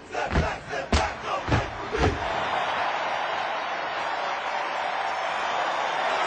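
Step team stomping in a steady rhythm, about two stomps a second, with shouted voices. About two seconds in the stomps stop and a crowd cheers loudly and steadily.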